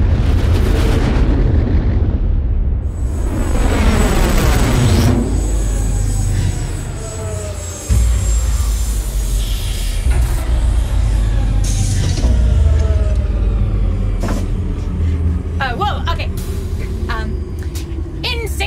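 Sound-designed spaceship landing: a loud, low rumble with falling, sweeping tones in the first few seconds and a sharp jump in loudness about eight seconds in, as of touchdown. Clicks and short hisses follow near the end.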